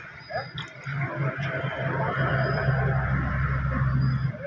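Water running along a shallow muddy channel, over a low steady hum, with a few brief voice-like calls in the first second.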